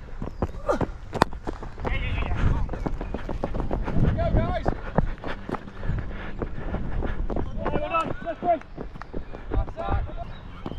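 Footsteps of a cricketer moving on foot across the grass, picked up by a body-worn action camera as a run of irregular thuds, with brief distant shouts a couple of times.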